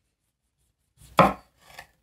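Kitchen knife cutting through a small tomato and knocking down onto a wooden chopping board about a second in, followed by a couple of fainter knocks near the end.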